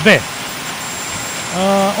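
Steady machinery din of a vacuum disc filter for copper concentrate running, with no distinct knocks, under a man's voice near the end.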